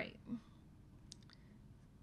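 A few faint clicks about a second in, over quiet room tone, with the end of a spoken word at the very start.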